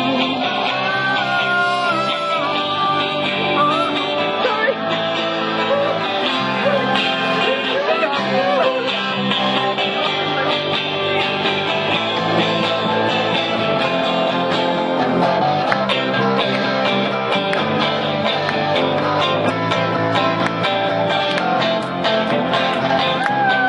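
Live band music led by strummed guitars, with singing over it, playing steadily throughout.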